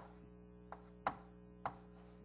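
Sharp, short taps of writing or drawing on a board: about three in two seconds.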